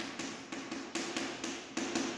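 Chalk on a chalkboard as capital letters are written: a quick run of short taps and scrapes, about three to four a second.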